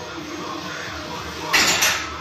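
A heavy barbell bench press rep with kilo plates: a low background, then a short, sharp rush of noise in two quick parts about one and a half seconds in, as the bar is pressed up and brought back toward the rack.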